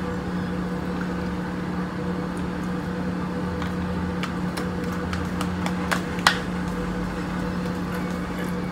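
A steady low electrical hum of room machinery, with a few light clicks of a spoon and fork against a plastic food container, the sharpest about six seconds in.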